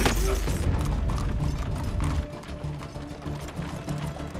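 A man's strained grunt right at the start. Then rapid, dense ratchet-like mechanical clicking and rattling over a low rumble, which drops away about two seconds in, with the film score underneath.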